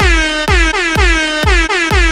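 Handheld canned air horn blasted in short, repeated honks, about two a second, each dipping slightly in pitch as it starts. The honks land on the beat of an electronic dance track with a kick drum.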